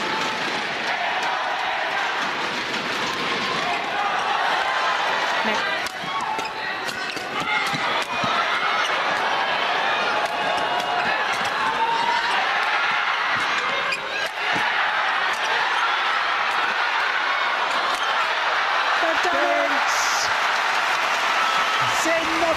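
An arena crowd of spectators shouting and calling out through a badminton rally. Sharp clicks of rackets striking the shuttlecock come at irregular intervals.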